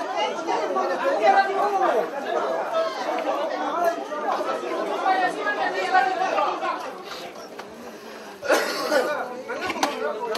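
Several people talking at once, an overlapping chatter of voices that dips somewhat quieter, then a louder voice comes in again near the end.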